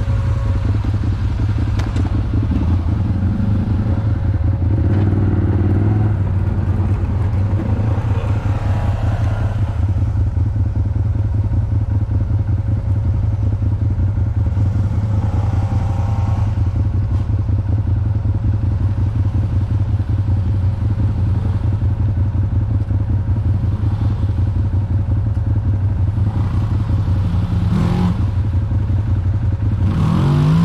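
Side-by-side UTV engine idling close by, a steady low rumble with an even pulse, while a second side-by-side's engine runs and swells a few times as it moves about nearby.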